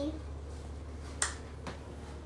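A sharp light click about a second in, then a fainter one half a second later, over a low steady hum.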